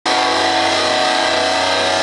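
Metalcore band's distorted electric guitar holding one loud, sustained chord, ringing out without a break.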